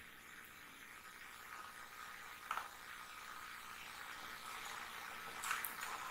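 Faint steady hiss of room and microphone background noise, with a soft click about two and a half seconds in and a couple more near the end.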